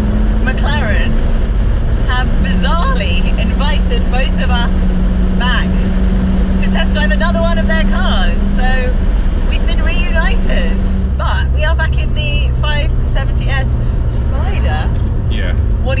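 McLaren 570S Spider's twin-turbo V8 running steadily while cruising with the roof down, its note stepping down about eleven seconds in, with wind and road noise in the open cockpit. People's voices talk and laugh over it.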